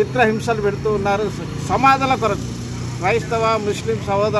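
A man speaking in Telugu, with a steady low hum beneath his voice.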